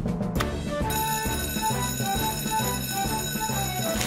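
Fire station alarm bell ringing steadily, starting about a second in, over background music.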